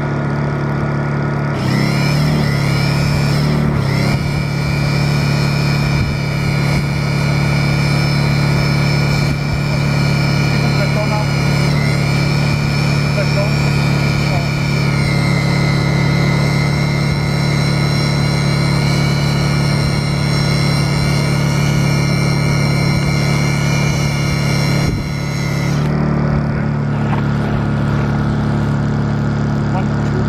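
Corded electric drill head spinning a hand-held ice core auger: a steady motor whine that starts about two seconds in, drops in pitch twice as the auger takes load, and stops about five seconds before the end. A steady low hum runs underneath throughout.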